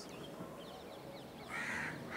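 A crow cawing once near the end, a harsh call lasting about half a second, over quiet outdoor background.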